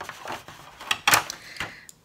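Plastic tray being handled and set down: a few sharp knocks and clatter, the loudest just after a second in.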